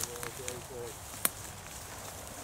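Footsteps and rustling through tall dry grass, with faint men's voices in the first second and one sharp click a little past the middle.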